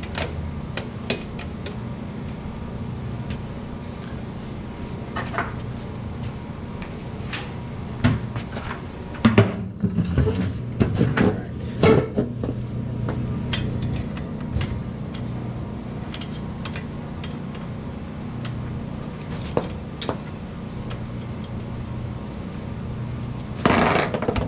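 Scattered metal clinks and knocks of a hand tool on the rear shock's spring adjuster as the spring is set stiffer, with a louder run of knocks about halfway through, over a steady low hum.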